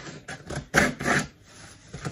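Packing tape being pulled and torn off a cardboard shipping box, in a few short ripping rasps.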